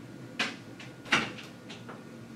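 A few sharp knocks, the loudest two about three-quarters of a second apart, followed by fainter clicks, over a steady faint hum.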